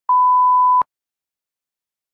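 A single steady 1 kHz test-tone beep, the stock sound that goes with a colour-bars card, lasting under a second and cut off abruptly with a click.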